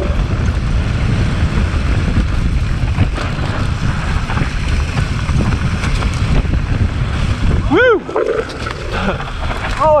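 Wind buffeting the microphone over the rumble of mountain bike tyres on a dirt forest trail during a fast descent. Near the end comes one short squeal that rises and falls in pitch.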